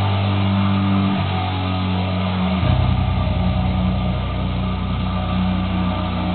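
Four-string electric bass guitar playing long held low notes over a heavy metal backing track, changing note about a second in and again past two and a half seconds.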